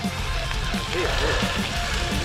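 Mountain bike rolling over a dirt forest track: a steady rumble of tyres and wind noise on the microphone, with faint background music under it.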